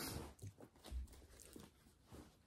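Faint rustling of clothing being handled, with a soft low thump about a second in.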